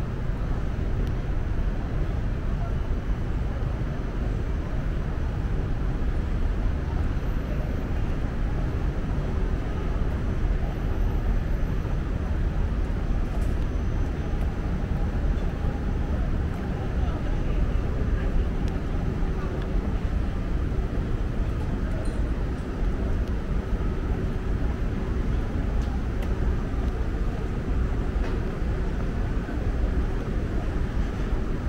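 Steady city street ambience: a low, even hum of distant traffic with faint voices, and no single event standing out.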